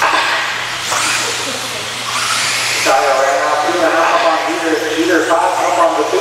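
RC buggies running on a dirt race track, a steady hissing rush. An announcer's voice comes in over it from about halfway through.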